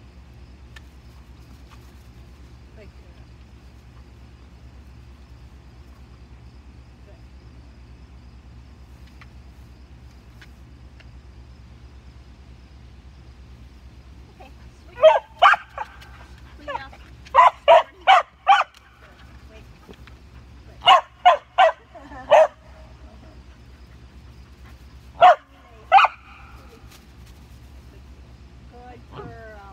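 Border collie barking in short runs during the second half: about eight barks, a pause, four more, then two.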